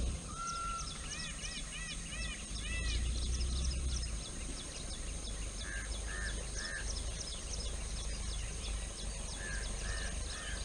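Wild birds calling: a quick series of about six arching notes in the first few seconds, a steady run of short high chirps throughout, and groups of three lower calls about six seconds in and again near the end, over a low rumble.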